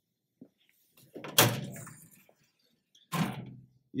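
Lower front access door of an Epilog Helix laser engraver being pulled open: a faint click, then a sharp thud about a second and a half in that dies away, and a second thud near the end.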